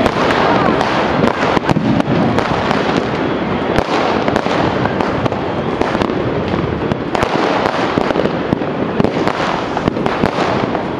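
Fireworks and firecrackers going off nonstop, a dense rapid crackle of many sharp bangs overlapping with no pause.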